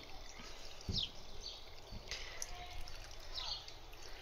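Faint, steady trickle of central heating water running out of a copper drain pipe as the system is depressurised.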